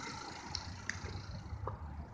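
Low steady outdoor rumble with a few faint, scattered clicks.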